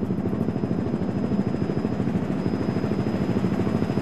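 Helicopter running overhead: a steady low rotor flutter with fast, even pulses.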